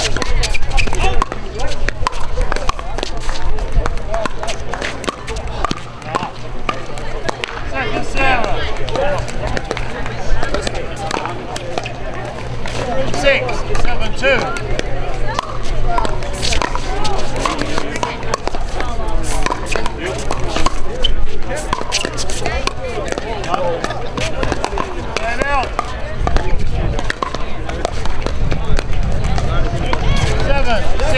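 Several voices talking on the surrounding courts, with sharp pops of pickleball paddles striking the plastic ball at intervals.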